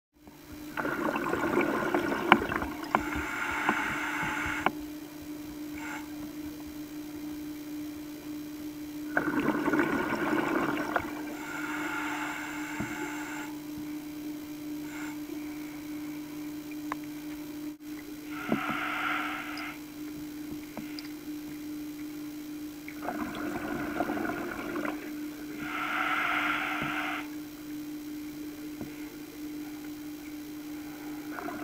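A scuba diver breathing through a regulator underwater. A broad rush of exhaled bubbles comes roughly every nine or ten seconds, each followed by a shorter, higher hiss of inhalation, over a steady low hum.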